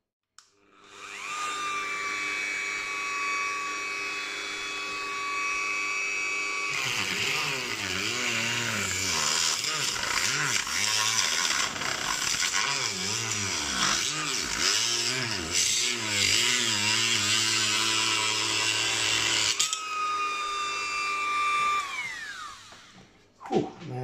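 Dremel rotary tool with a small cutting blade spinning up to a steady high whine, then cutting into the plastic of a microphone casing for about thirteen seconds, its pitch wavering and grinding under load. It then runs free again and winds down near the end.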